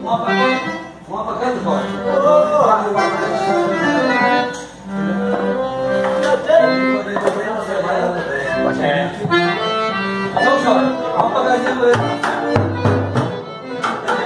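Piano accordion played live: a tune of held notes and chords.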